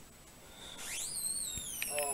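A single whistle that glides steeply up in pitch and then slowly falls, starting about a second in, heard as the video starts playing on the TV.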